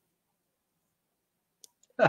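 Near silence, with a faint click late on and a smaller one just before speech resumes.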